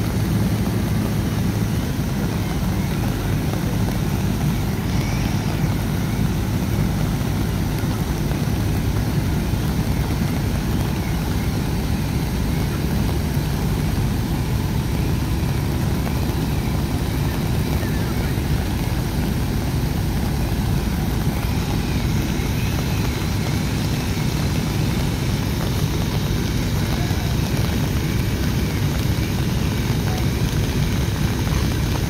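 A fire truck's diesel engine running steadily at a constant speed, a loud, even drone, with heavy rain falling.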